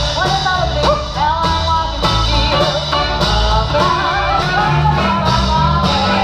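A small street band playing live: a woman singing over guitar, upright bass and drums.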